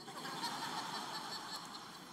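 Crowd laughter from a large audience in a hall, a dense wash of many voices fading away over the two seconds.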